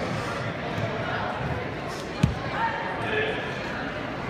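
Barefoot karate kata on a wooden gym floor: dull thuds of feet landing and shifting stance, with one sharp thump a little past halfway, over a murmur of voices echoing in a large hall.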